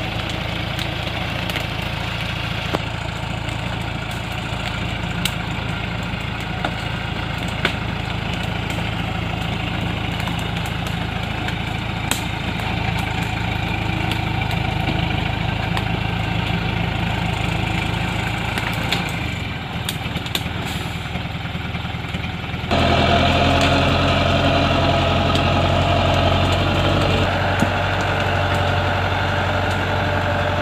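Diesel engine of a Chiến Thắng light truck heavily loaded with long acacia logs, running steadily at low revs as it crawls forward, with a few faint ticks scattered through. About 23 s in the engine sound jumps louder and fuller.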